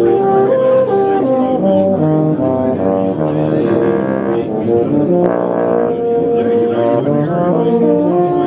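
Yamaha NEO euphonium played in a melodic passage of changing notes, with a quicker run of notes in the middle. Its tone is rich and full.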